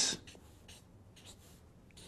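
A few faint, short scratching strokes of writing.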